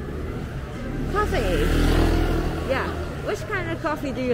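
A vehicle engine passing on the street, swelling to its loudest about two seconds in and then fading, with passersby talking over it.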